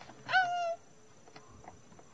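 A woman's short, high exclamation "Oh!", falling in pitch, from a rider waiting for the drop; then a few faint clicks.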